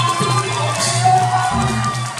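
Live Thai traditional ensemble music accompanying a likay play: sustained low tones under gliding melodic lines, with a short bright accent a little under a second in.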